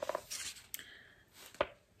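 Faint handling noise from a large paperback picture book held open: soft paper rustles as the turned page settles, then a single short click near the end.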